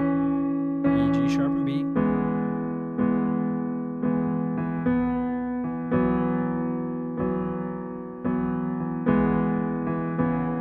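Korg SV1 stage piano playing a slow right-hand melody, single notes struck about once a second, each left to ring and fade before the next. A few spoken words come over the first held note early on.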